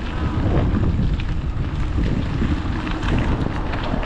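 Wind buffeting the microphone of a bicycle-mounted camera while riding, a steady low rumble with no speech over it.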